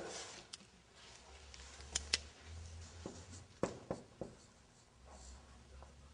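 Marker pen writing on a whiteboard: a few faint, short strokes and taps as letters are drawn, over a low steady room hum.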